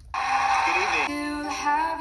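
Music and a singing voice from a YouTube video playing through a Dell Inspiron 3511 laptop's built-in speakers. It opens with a brief noisy burst, and about a second in held notes and singing come in.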